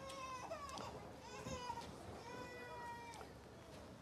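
A baby crying faintly, in three drawn-out high wails.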